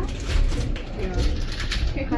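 A low, steady rumble with faint, brief snatches of a person's voice.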